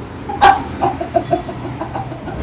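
A woman laughing hard: one loud burst about half a second in, then a quick run of short, high-pitched laughs.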